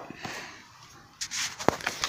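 Soft paper rustling, with a couple of sharp clicks, as fingers handle a glued printer-paper case close to the microphone. It starts about a second in.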